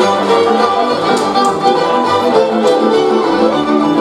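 Lively fiddle-led string band music playing for folk dancers, with a few sharp knocks over it.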